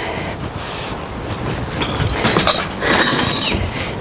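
Folding camp chair being opened out and set down on paving: its fabric seat rustling and metal frame rattling and scraping, busiest in the second half.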